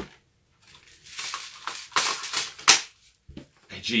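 Hard plastic airsoft drum magazine being handled and fitted into a G36-style airsoft gun's magwell: irregular plastic clatter and knocks, with two sharp clicks about two seconds in and shortly after as it seats.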